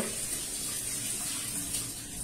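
Kitchen tap running steadily into a mesh strainer of soaked cashews held over a stainless steel sink, rinsing the nuts.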